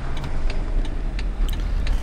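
Jeep Wrangler's turn signal ticking about three times a second during a turn, over the steady low rumble of the engine and road heard inside the cab.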